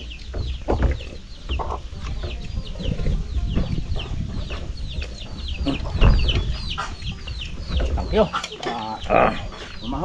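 Chickens peeping, a steady stream of short, high, falling calls several times a second, over a low rumble with a louder bump about six seconds in.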